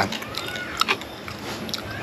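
Eating sounds: a man chewing a bite of grilled fish, with a few short soft clicks as he picks at the fish with his fingers.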